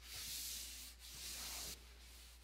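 Wet sanding of a finished wooden tabletop by hand with 2000-grit or finer sandpaper and water under very light pressure, taking the high spots and nibs off the finish. Two faint back-and-forth strokes of soft hiss.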